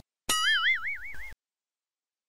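Comic 'boing' sound effect: a springy tone that rises and then wobbles up and down in pitch for about a second, cutting off suddenly.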